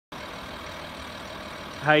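Ford Territory Titanium SZ idling, a steady, even hum, with a man's voice starting near the end.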